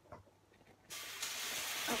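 A faint knock, then about halfway through a sudden steady hiss: a saucepan of quinoa boiling over, water sizzling on the hot ceramic hob.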